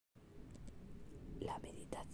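A whispered voice begins reading aloud in Spanish about one and a half seconds in, over a faint low background noise.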